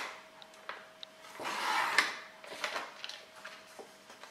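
Paper trimmer's sliding blade drawn along its track, cutting through black cardstock in one stroke of about half a second that builds and ends sharply. Light clicks and rustles of the card being handled follow.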